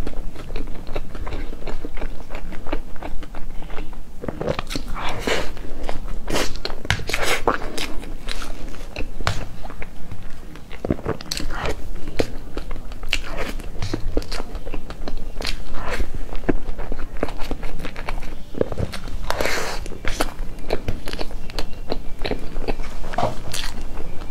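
Close-miked chewing and wet mouth sounds of a person eating cream cake with berry filling: a dense, irregular run of smacks and clicks.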